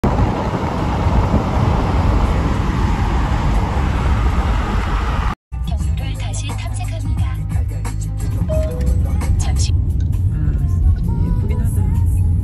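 Car cabin noise: a loud, steady rumble and hiss that breaks off suddenly about five seconds in, followed by a lower steady hum with scattered clicks and knocks.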